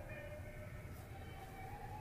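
Quiet background: a low hum with a few faint steady tones and no distinct event.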